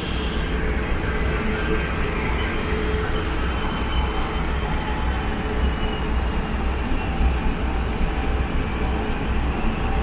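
ETS electric passenger train running in along the platform and slowing, with a steady low hum and a faint whine that falls slightly in pitch.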